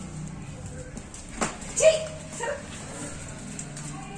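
A dog whimpering twice in short, high notes after a sharp knock. It is eager to get at a bat it has cornered.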